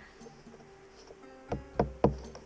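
Mallet striking a hooked tool driven into a wooden deck seam to loosen old caulking: two sharp knocks a third of a second apart, about a second and a half in.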